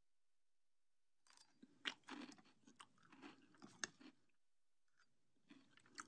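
Faint chewing of a mouthful of cereal: irregular soft crunches starting about a second in, a short pause, then more chewing near the end.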